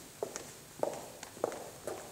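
Footsteps on a hard floor, a walking pace of about two steps a second, each step a sharp click.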